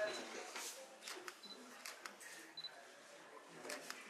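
Camera shutter clicks as a posed photo is taken: about half a dozen short, sharp clicks at irregular moments. Faint voices murmur in a quiet room.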